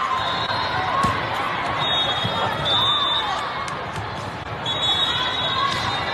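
Busy indoor volleyball tournament hall: many voices and crowd chatter echoing over the courts, with sneakers squeaking on the court floor and the occasional sharp smack of a volleyball being hit.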